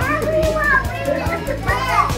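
A group of preschool children's voices, high and overlapping, chattering and calling out together.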